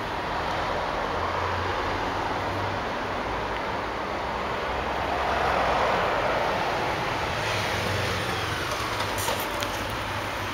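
Road traffic noise from a street, with a vehicle passing that swells to its loudest about halfway through, over a low rumble. A few faint clicks near the end.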